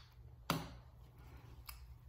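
Two short clicks, a sharp one about half a second in and a fainter one near the end, over faint room tone: the pump dispenser of a sunscreen bottle being pressed to dispense lotion.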